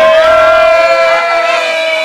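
Battle-rap crowd reacting to a punchline: one voice holds a long drawn-out high shout, steady in pitch, over other hollering voices.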